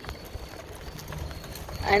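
Riding noise from a bicycle in motion: low rumble of wind on the microphone, with a few light scattered clicks.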